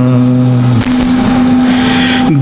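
A man's voice holding the last drawn-out note of a chanted line of an Urdu elegy, stopping under a second in. A single steady low note carries on beneath a noisy hiss until the chanting resumes.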